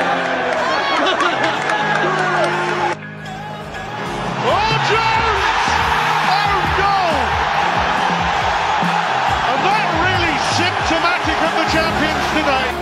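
Background music laid over football stadium crowd noise, with many voices shouting and cheering. The sound drops suddenly about three seconds in and then builds back up.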